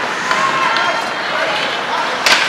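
Indistinct voices of players and spectators in an ice hockey arena over steady background noise, with a light click about a third of a second in.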